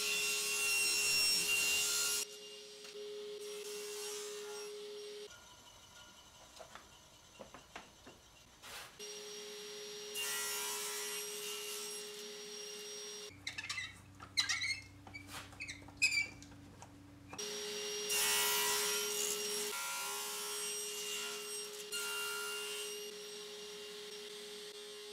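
Table saw running with a steady whine, its blade cutting through hardwood in several passes: one at the start, another about ten seconds in, and another near eighteen seconds. In between are quieter stretches, one of them with a low hum and scattered clicks.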